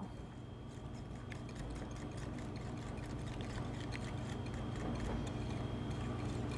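Wire whisk beating thick chocolate batter in a ceramic bowl: a fast, steady run of light ticks as the wires strike the bowl, over a low hum.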